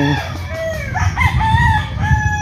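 Rooster crowing: a long crow that rises about a second in and is held past the end.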